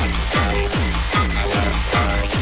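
1990s acid tekno played from vinyl in a DJ mix: a fast, steady kick drum, about two and a half beats a second, each kick falling in pitch into a deep boom, under layered electronic synth sounds.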